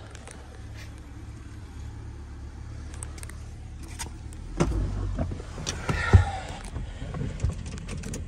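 Knocks, bumps and rustles of someone climbing into an old car's driver's seat, over a low steady hum. It is quiet for the first few seconds, then a cluster of knocks begins about four and a half seconds in, with one loud thump about six seconds in.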